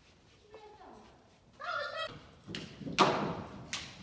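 Horse's hooves thudding on the sand of an indoor arena in a quick run of strikes, the loudest about three seconds in.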